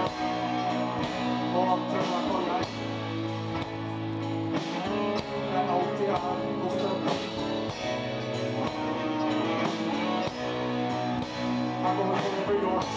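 Live rock band playing: electric guitars, keyboard and drums, with held chords and regular drum hits.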